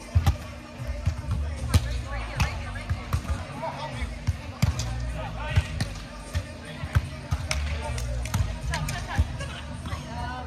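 Repeated sharp slaps of hands and forearms on a beach volleyball during a rally: a serve, then passes, sets and hits. Voices and background music sound underneath.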